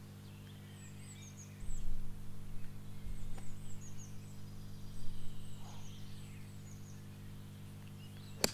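Small birds singing, with many short high chirps repeating throughout, over a steady low hum. Low gusts of wind buffet the microphone, and there is a faint click about three and a half seconds in.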